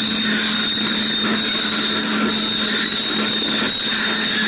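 Steady industrial machine noise: an even hiss with a constant low hum and a high whine running through it.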